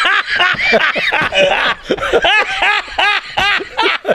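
Two men laughing heartily together, a long run of quick ha-ha-ha's at about four or five a second.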